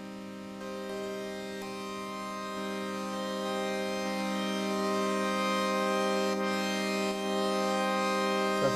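Moog One polyphonic analog synthesizer holding a sustained note or chord of sawtooth oscillators from a basic init patch with the mixer turned up and the filter wide open: a steady, bright, buzzy tone. It grows louder in a few steps, about half a second, two and a half and four seconds in.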